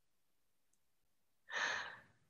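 Near silence, then about one and a half seconds in a single sigh from a woman who is crying.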